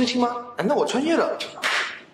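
A young man speaking a line in Mandarin, then a short whooshing swish near the end.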